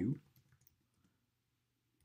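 A few faint computer-keyboard key clicks in the first second, quick taps as a word is typed.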